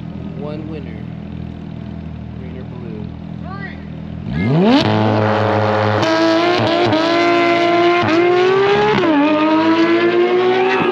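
Two cars idling at a drag-race start line, then launching hard about four seconds in: the engines rev up, climbing in pitch with several quick drops as they shift up through the gears.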